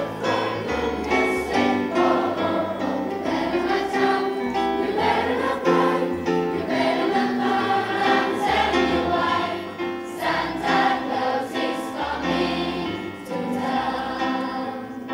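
A secondary-school choir of teenage students sings a song together, with sustained notes changing about every second over low held bass notes.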